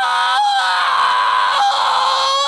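A cartoon character's long, high-pitched scream, held on one shrill, nearly steady note. It is the drawn-out end of a shouted "Unacceptable!"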